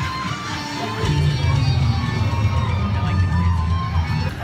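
Loud parade music from the float's sound system. A heavy bass line comes in about a second in, under a held melody.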